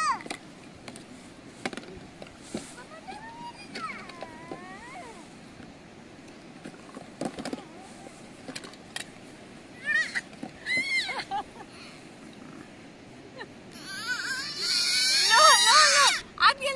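A baby starts crying loudly about two seconds before the end, a wavering wail that is the loudest sound here. Before that there are only brief child vocal sounds and light clicks.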